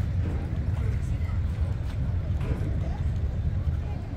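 River cruise boat's engine running with a low, steady rumble as the boat gets under way, with faint chatter of passengers on the deck.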